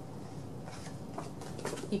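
Faint rustling and a few light clicks of paper being handled as a printed card is pulled out of a fabric project bag, most of it toward the end.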